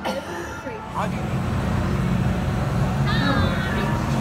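A spinning-tub amusement ride running: after a brief snatch of a girl's voice, a steady low rumble sets in about a second in, with a child's short high-pitched shout near the three-second mark.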